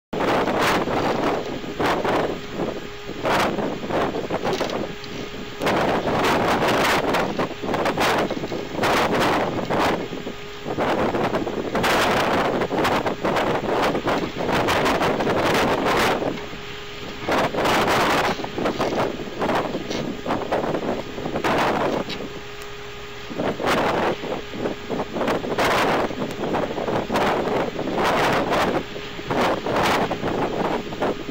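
Wind buffeting an outdoor nest camera's microphone in irregular gusts every second or two, with a faint steady hum underneath.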